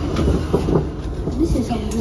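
A steady low rumble under quiet, indistinct talk, with a couple of sharp clinks of plates and cutlery at a breakfast table.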